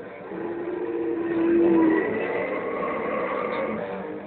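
Distorted electric guitar played live. It holds one long note for the first two seconds, the loudest part, then moves to higher held notes with a slow upward bend.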